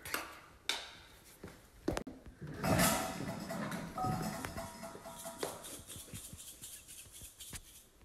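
Scattered light knocks and clicks of toy kitchen pieces being handled, with faint music holding a few steady notes from about three seconds in.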